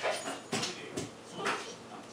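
Basenji giving short whines and yips, about two a second, while jumping about in excitement waiting for its food.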